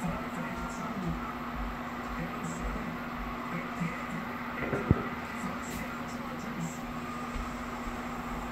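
Aquarium filter running: a steady hum with water bubbling, and a single sharp click about five seconds in.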